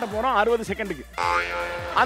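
A voice speaking for about a second, then a held, steady electronic tone with many overtones: an edited-in TV sound effect over the show's background music.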